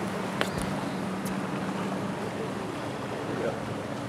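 Boat motor running steadily at trolling speed with a constant low hum, with wind buffeting the microphone and water washing along the hull.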